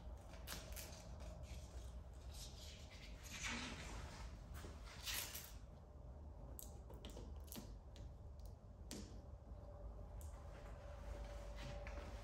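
Faint, irregular rustling and scraping of an adhesive film overlay and its backing being handled and pressed by hand onto a car's rear trim. A low steady hum sits underneath.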